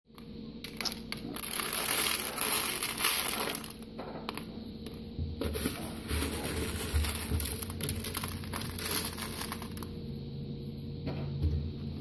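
Rustling, crinkling handling noise, busiest in the first few seconds and softer after, over a steady low hum.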